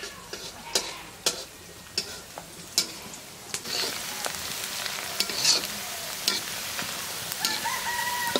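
Metal spatula scraping and knocking in a black iron wok as sliced onions are stirred and fry in hot oil, the sizzle growing louder about halfway through. A rooster crows near the end.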